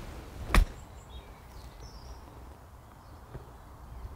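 A 4-iron striking a golf ball once, a single sharp click about half a second in, followed by quiet open-air background.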